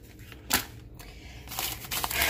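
A single sharp knock about half a second in, then plastic grocery packaging rustling as it is handled.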